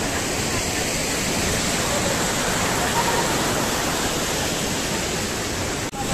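Mountain stream rushing and tumbling over boulders: a steady, even wash of water noise.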